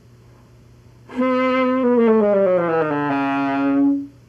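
A saxophone sounding one note, played with the upper lip drawn off the mouthpiece. It starts about a second in, holds steady briefly, then slides slowly down in pitch before cutting off.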